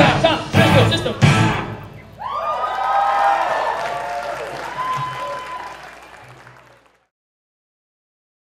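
A live rock band (electric guitars, bass, drums) plays the last loud accented hits of a ska-punk song, then the audience cheers and applauds with whoops and whistles. The cheering fades out about seven seconds in.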